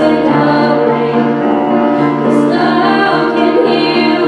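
Live worship song: young female voices singing into microphones over a small band's accompaniment, amplified in a church hall.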